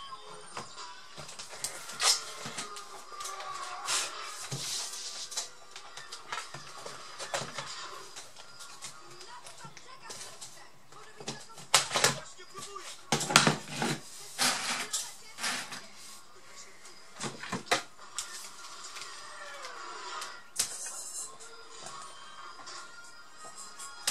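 Knocks and clatter of a laptop's plastic case being closed, turned over and handled on a bench mat, with the sharpest knocks about halfway through, over faint background music.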